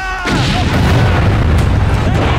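An explosion in a battle scene: a loud boom followed by a long, deep rumble.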